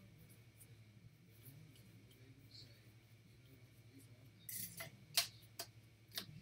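Baseball trading cards being flipped through by hand, quiet for most of the moment. Then, about four and a half seconds in, comes a short cluster of sharp card flicks and rustles, over a low steady hum.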